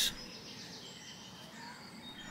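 Quiet outdoor background with faint birdsong: a few thin, high chirps over a low steady hiss.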